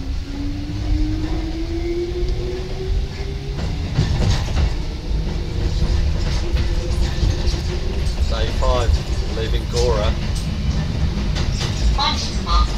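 Electric train's motors whining, rising in pitch over the first few seconds as it gathers speed, over a steady rumble of wheels on the track, heard from inside the driver's cab.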